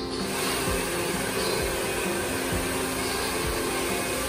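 Handheld hair dryer blowing steadily, over background music.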